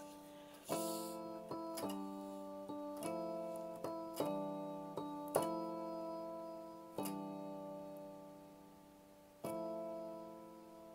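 Instrumental music: slow keyboard chords, piano-like. Each chord is struck and left to ring and fade, about seven of them, with the last one near the end.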